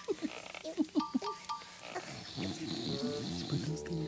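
A man snoring in his sleep, with long snorting breaths in two spells, over light music; sustained music notes come in near the end.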